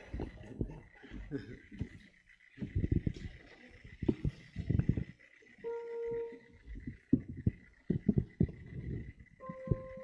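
A praise band getting ready to play: scattered low knocks and bumps with muffled voices, a single held instrument note about six seconds in, and another sustained note starting near the end as the music begins.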